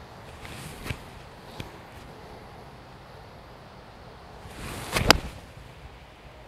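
A pitching wedge swung through: a short swish, then a single sharp click as the clubface strikes a Callaway golf ball about five seconds in, over faint steady wind noise. Two faint ticks come earlier.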